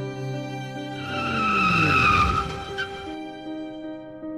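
A car's tyres screeching in a hard skid for about two seconds, with a falling engine note as it brakes, over sad string background music.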